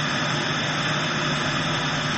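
A steady, even hiss with a low hum beneath it.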